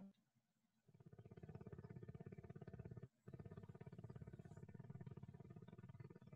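Near silence with a faint, rapidly pulsing low buzz that starts about a second in and breaks off briefly around the middle.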